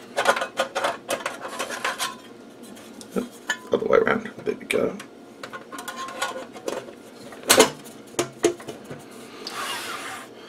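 Thin aluminium shield cover being worked into place inside an opened Agilent E4419B power meter's metal chassis: a run of irregular metallic clicks, scrapes and rattles. The loudest knock comes about seven and a half seconds in.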